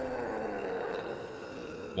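A low, even noise from the anime episode's soundtrack, slowly fading out.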